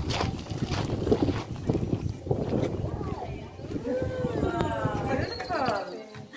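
Women's voices calling out in excited, sing-song exclamations, pitch sliding up and down, through the second half, over a low rumble on the microphone and a few clicks in the first half.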